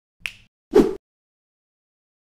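Two short intro sound effects: a sharp snap-like click, then a louder, fuller pop about half a second later.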